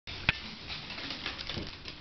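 A small dog's claws ticking and pattering on a hardwood floor as it trots up, with one sharp click shortly after the start.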